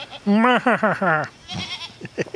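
A female goat bleating once: a quavering call about a second long. The goats are waiting to be fed.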